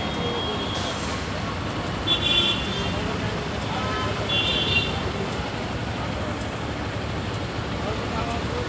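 Steady road-traffic noise while waiting at a red light, with two short high-pitched horn toots about two seconds and four and a half seconds in.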